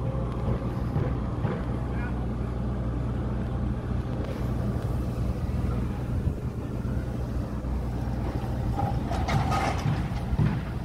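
Excavator diesel engines on a building site running steadily, a low drone with scattered knocks and clanks that grow busier near the end.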